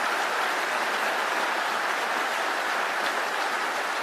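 Large audience applauding, a steady dense clapping that holds at an even level throughout.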